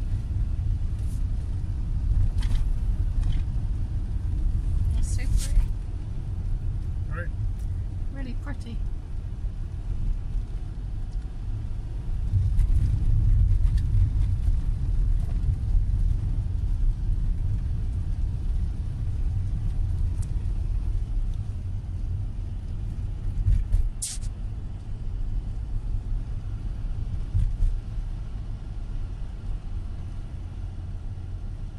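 Car cabin noise while driving: a steady low engine and tyre rumble, with a few scattered clicks and one sharper click about three-quarters of the way through.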